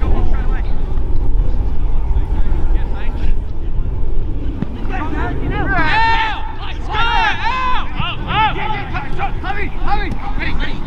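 Footballers' voices shouting short calls across the pitch during play, the shouts coming thick from about halfway through, over a steady low rumble.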